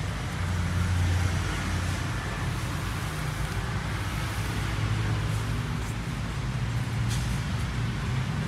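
Road traffic noise: a steady low engine rumble with a haze of passing vehicles, swelling and easing slightly.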